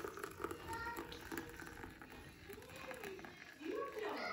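Hot water poured in a thin stream from a steel kettle into a ceramic mug of instant coffee, faint, with distant voices briefly audible in the background near the end.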